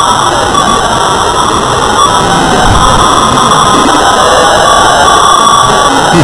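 Loud, steady wall of distorted noise from many audio tracks layered at once and heavily processed with effects, giving a hissing, phasey, comb-filtered sound in which no single source stands out.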